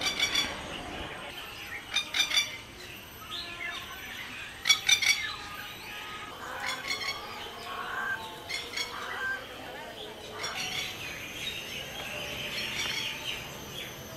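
Birds calling in an aviary: short bursts of rapid chirps a few seconds apart, then a steadier high twittering near the end.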